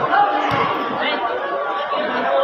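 Spectators chattering and calling out around a basketball game, many voices at once. There is a short sharp knock about half a second in.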